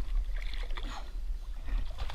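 Low, steady wind rumble on an action-camera microphone over a fishing kayak, with irregular splashes of water against the hull and small knocks of gear.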